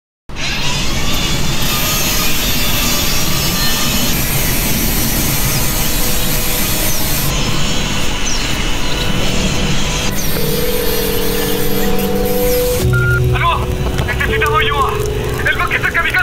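Soundtrack of a forest-fire prevention ad: a dense, even roaring noise starts suddenly just after silence. Sustained music notes come in about ten seconds in, and from about thirteen seconds a voice speaks over the music.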